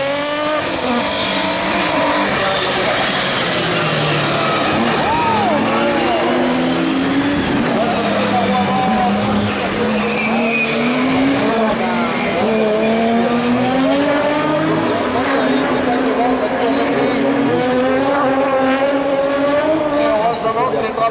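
Super 1600 rallycross cars' 1.6-litre four-cylinder engines revving hard, the pitch climbing and dropping again and again through gear changes and corners, with more than one engine heard at once.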